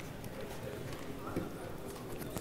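Faint, muffled talk away from the microphone, with light knocks and rubbing as a microphone is handled and clipped on.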